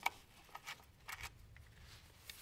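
Faint clicks and handling sounds of a cable's ring terminal and its screw being fitted to a motor controller's power terminal: one sharp click at the start, then a few light ticks.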